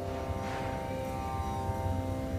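A steady instrumental drone holding one pitch with many overtones, with no chanting over it.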